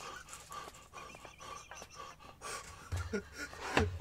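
Quiet, breathy exhalations and stifled laughter from people reacting in amazement. A voiced laugh begins near the end.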